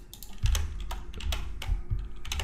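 Computer keyboard and mouse clicking: an irregular string of sharp key and button clicks, about eight in two seconds.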